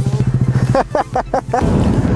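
Small 125 cc single-cylinder mini motorcycle engine running close by, getting louder about one and a half seconds in, with a short burst of laughter in the middle.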